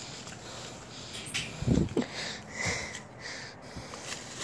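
Pug puppy sniffing, a few short sniffs and snorts around the middle, with a low thump among them.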